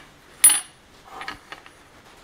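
Steel setup blocks being set down and shifted on a metal surface plate: one sharp, ringing metallic clink about half a second in, then a few lighter knocks.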